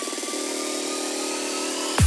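Psytrance build-up with the bass cut out: a fast stuttering synth roll that settles into a held chord about a third of a second in, under a thin whistling tone that rises slowly in pitch.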